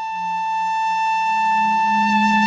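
Bansuri (Indian bamboo flute) holding one long, steady note. A low sustained note underneath grows louder about midway.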